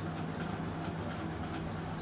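A steady low hum over faint even background noise, with no speech.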